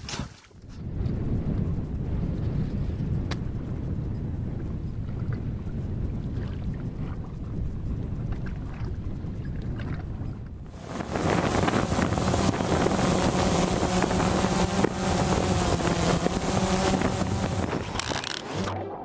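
Low rumbling wind noise on the microphone. About eleven seconds in it gives way to a louder, steady motor drone with a constant hum.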